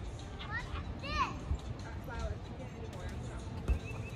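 A small child's high-pitched voice making a few short calls about a second in, over a steady low rumble, with a single knock near the end.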